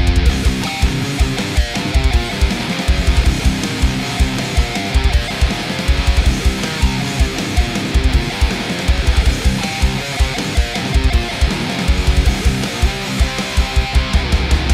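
Mithans Berlin electric guitar with PAF-style humbuckers playing high-gain distorted heavy riffs in a full band mix, over rapid runs of deep drum hits.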